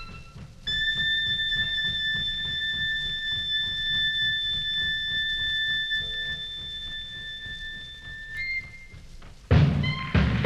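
1938 big-band swing recording: a clarinet holds one long high note for about eight seconds over steady tom-tom drumming, moves up briefly, and then the full band crashes back in loudly near the end.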